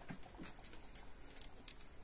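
Faint, scattered light clicks and taps as a hand-held turning tool and fingers shift against the metal parts of a mini lathe's tool rest; the lathe itself is not running.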